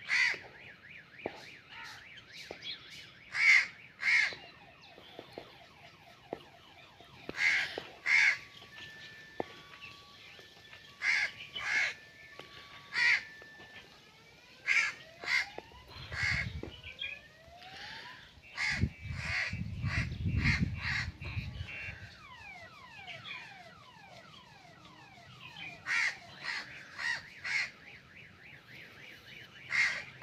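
Indian ringneck parakeet giving loud, harsh screeching calls, mostly in quick pairs, repeated every few seconds. A low rumble comes in briefly about halfway through.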